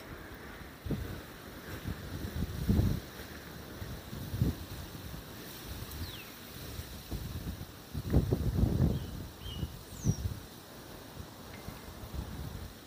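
Wind gusting over the microphone in uneven low rumbles, strongest about two to three seconds in and again about eight seconds in, with a few faint bird chirps, one falling in pitch about six seconds in and another near ten seconds.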